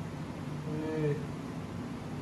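A short, soft voiced murmur from a person, slightly falling in pitch, lasting about half a second just before the middle, over a faint steady low hum.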